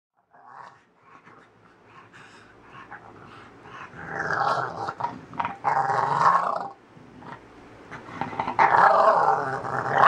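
English bulldog growling as it wriggles on its back on a carpet, in loud rough bouts about four, six and nine seconds in, with quieter stretches between.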